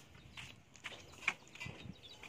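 Chickens in a wire-mesh pen making a few faint, short clucks and taps, the loudest about a second and a quarter in.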